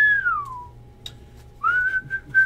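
A person whistling a tune: a long note that swells and slides down in pitch during the first half-second, a short pause, then another steady note near the end.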